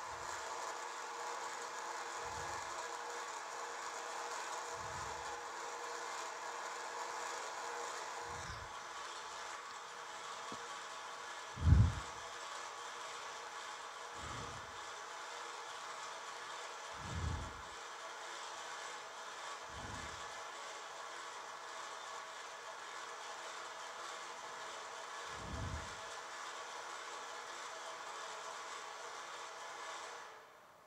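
Toroidal transformer winding machine running, played back through lecture-hall speakers. A steady mechanical hum and whir carries low thumps every two to three seconds, the loudest about twelve seconds in.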